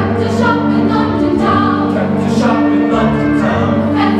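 High school choir singing a Broadway choral medley, with steady low notes held underneath the voices.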